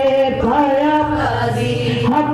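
Women singing a devotional qasida/manqabat in a chant-like style, the lead voice into a microphone, with long held notes that bend slowly in pitch.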